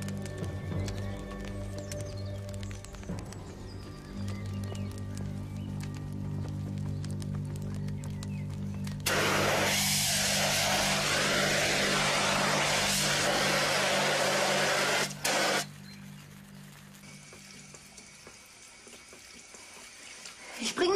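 Background music with low held chords. About nine seconds in, a fire extinguisher blasts a loud, steady hiss at a fire burning under a spit, putting it out. The hiss breaks off for a moment and then stops about six seconds later.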